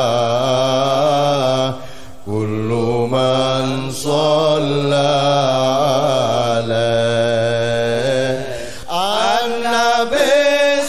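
Arabic sholawat chanted in long, drawn-out melismatic notes with a wavering pitch, pausing briefly about two seconds in and again near the end.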